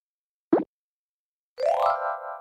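Cartoon sound effects: a short rising plop about a quarter of the way in, then near the end a rising sweep that settles into a held chiming tone.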